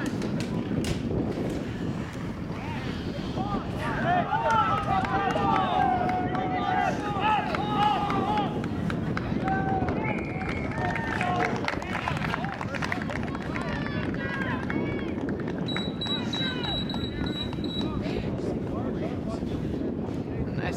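Indistinct shouting and calls from rugby players and sideline spectators across an open field, loudest in the first half. A steady high tone lasts about two seconds later on.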